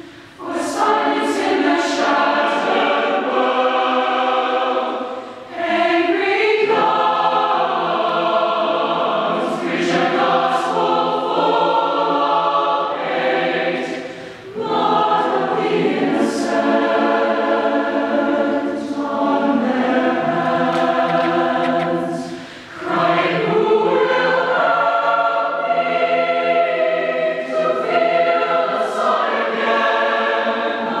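Mixed-voice choir singing sustained chords, in long phrases with brief breaks between them.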